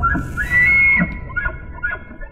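Bull elk bugle: a high whistle rising to a peak about half a second in, breaking downward with a low grunt around one second, then a run of short chuckles that fade with echo.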